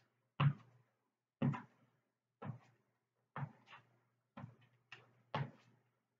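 Footsteps during butt-kick walks: a dull thud about once a second as each foot comes down on the floor, with a faint steady low hum underneath.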